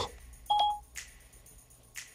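iPhone Siri tone: one short electronic beep about half a second in, as Siri finishes listening to a spoken request, followed by a faint click.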